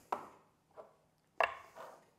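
A few light knocks of small ceramic bowls being moved and set down on a wooden cutting board, the loudest a little past halfway.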